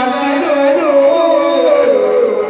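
Yakshagana singing: a drawn-out, high vocal line of held notes that slide from one pitch to the next.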